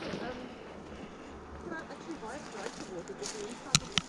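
Rustling and footfalls of someone walking through dense, overgrown shrubs on a mountain trail, with two sharp clicks about a quarter second apart near the end.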